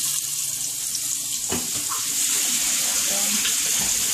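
Skirt steak pinwheels searing in hot butter in a frying pan, a steady sizzle. From about a second and a half in, running tap water joins it.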